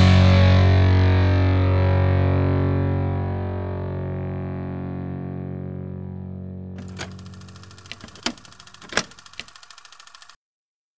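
The last distorted electric guitar chord of a punk rock song ringing out through the amplifier and slowly fading away. From about seven seconds in, a handful of sharp clicks sound as the chord dies out.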